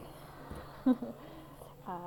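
A woman laughing briefly, in short voiced bursts, over a faint steady low hum.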